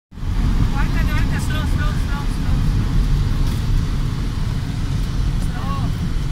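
Steady low road and engine rumble inside a moving car's cabin at highway speed. A faint voice comes in about a second in, and another voice starts near the end.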